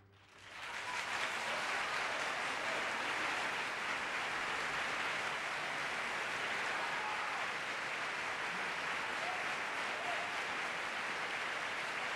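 Theatre audience applauding after an opera number, breaking out just as the singing stops and quickly swelling to steady, dense applause.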